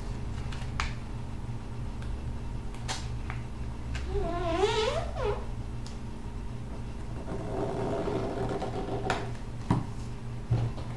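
Paper being creased and smoothed by hand on a tabletop, with a few sharp taps, over a steady low hum. About four seconds in, a wavering high-pitched cry rises and falls for about a second.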